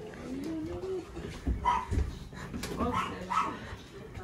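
A dog whining, a faint rising whine in the first second, then a few short yips, with a couple of low thuds about halfway through.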